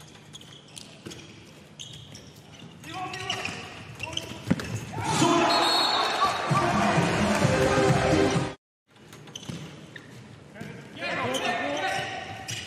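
A handball bouncing on an indoor court floor amid players' shouts and calls echoing in a largely empty arena. The voices grow loud for a few seconds past the middle, and the sound drops out abruptly for a moment about two-thirds of the way through.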